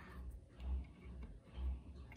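Faint low thuds repeating evenly about once a second, under quiet room tone.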